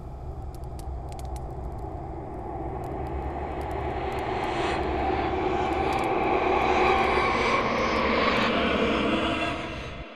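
A broad roaring noise over a low rumble, with scattered crackling clicks early on, swelling steadily over several seconds to a peak and then falling away sharply at the very end.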